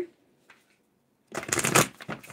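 Tarot cards being shuffled: a short burst of papery card rustling begins about a second and a half in, after a near-silent pause.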